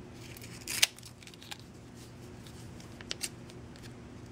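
Scissors snipping through layered clear plastic packing tape: one sharp snip about a second in, with a few lighter clicks around it and two more near the end.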